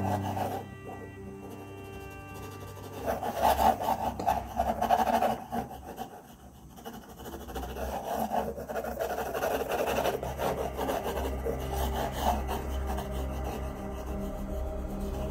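Graphite pencil scratching across drawing paper in quick sketching and hatching strokes. The strokes come in two spells, one from about three to six seconds in and another from about eight seconds to near the end, with a short lull between.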